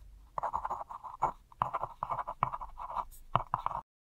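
Pen scratching across paper in a quick series of short strokes and taps, stopping abruptly just before the end.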